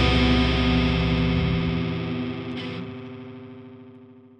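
A final distorted electric guitar chord with effects rings out and fades slowly away, ending the song. A short hiss-like noise cuts in about two and a half seconds in.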